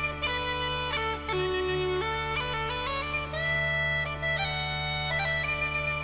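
Bagpipe music: a melody of changing notes played over steady, unbroken drones.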